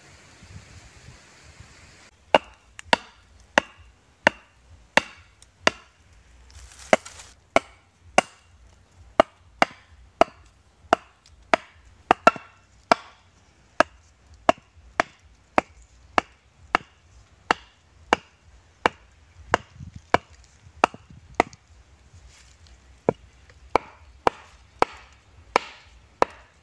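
Wooden stakes being pounded into the ground by a hard hand-held object striking their tops: a steady run of sharp wooden knocks, about three every two seconds, starting about two seconds in.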